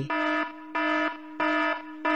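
Phone ringtone: three evenly spaced electronic beeps, each a steady pitched tone about half a second long.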